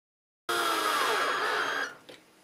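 Cordless drill-driver running for a little over a second while driving a fastener into the mounting panel, starting about half a second in. Its motor whine drops in pitch partway through as it takes load, then cuts off abruptly.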